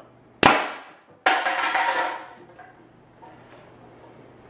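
Homemade compressed-air Nerf Rival launcher firing: a sharp pop as its quick exhaust valve dumps the 150 psi chamber. Under a second later comes a second sharp hit with a rattling tail lasting nearly a second, the foam ball round striking and ricocheting off something.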